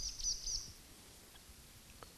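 A small bird giving a quick series of three or four high chirps in the first part, then near silence.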